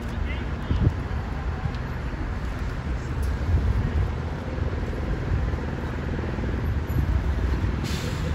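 Low drone of two distant helicopters approaching, with wind buffeting the microphone.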